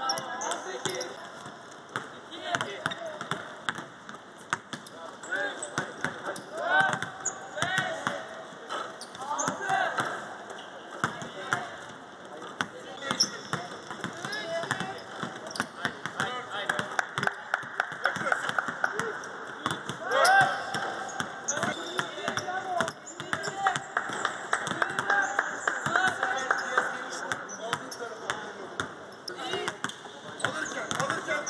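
Basketballs bouncing again and again on a court during a team practice, with voices calling out over the dribbling.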